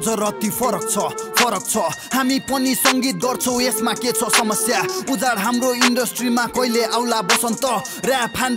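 Nepali rap verse delivered over a hip hop beat, with drum hits about every one and a half seconds and the deep bass line cut out.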